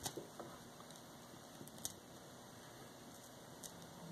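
Very faint vinyl surface noise from a turntable stylus riding the groove at the start of a track: a low hiss with a soft click about every 1.8 seconds, once per turn of the record. No music is heard because the opening of the track is missing on this early LP pressing.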